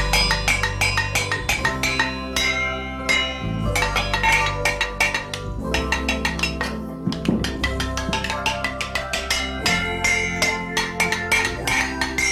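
Stainless steel pots and pan lids beaten with sticks like a drum kit, a fast run of metallic clangs, each one ringing on, over a musical backing with sustained low notes.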